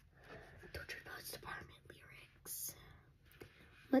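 A girl whispering softly to herself, reading song lyrics under her breath.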